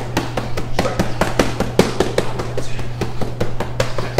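Boxing gloves hitting focus mitts in a fast, steady flurry of punches, about five a second.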